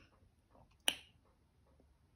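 A single sharp click a little under a second in, against near silence of room tone.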